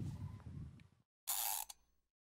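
Low outdoor rumble on the microphone that fades out within the first second, then a brief gap and a short hissing whoosh about half a second long.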